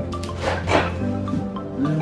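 Background music with steady held notes. About half a second in, a short noisy burst rises over it.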